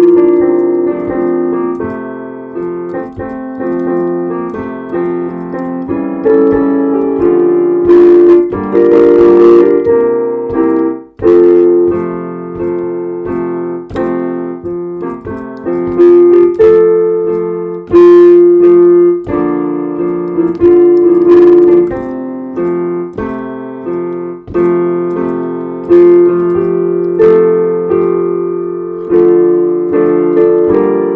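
Piano music: chords and a melody played as struck notes, each ringing down before the next.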